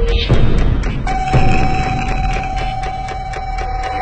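Eerie advert soundtrack: a low rumbling drone, joined about a second in by a single sustained high tone.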